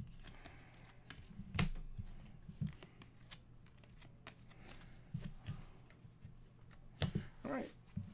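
A stack of trading cards handled by hand: cards slid and squared together, with scattered soft taps and clicks against the table.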